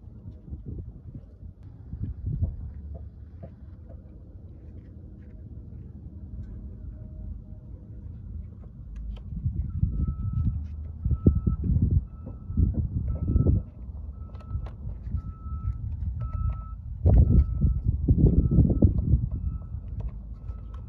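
Plastic fuse and relay being worked out of a car's under-hood fuse box by a gloved hand: irregular rattling, scraping and knocking, loudest in bursts about halfway through and again near the end. A faint short beep repeats about twice a second through the second half.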